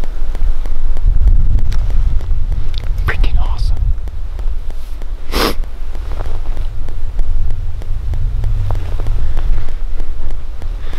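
Wind rumbling on the microphone, with faint whispering and a short sharp hiss about halfway through.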